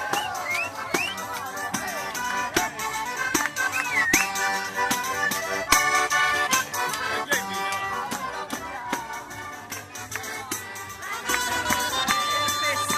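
Southern Italian folk band playing a fast dance tune on diatonic button accordions (organetti), with a frame tambourine struck and jingled in a quick, even rhythm and people whooping along. A shrill reed pipe comes in near the end.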